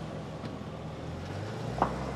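Car engine idling with a steady low hum; its note changes about one and a half seconds in, and a single short click follows just after.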